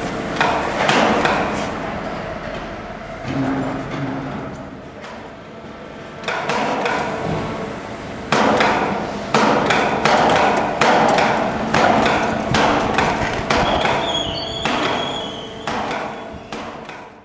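Repeated loud metal-on-metal bangs, each ringing briefly, coming irregularly at first and then about once a second in the second half. They are the clanking of metalwork while a truck cab is being dismantled and lifted off its chassis.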